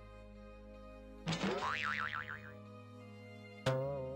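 Soft background music with two cartoon sound effects laid over it. About a second in comes a springy boing whose pitch wobbles up and down for about a second. Near the end comes a sharp hit with a wavering ring that dies away, the loudest moment.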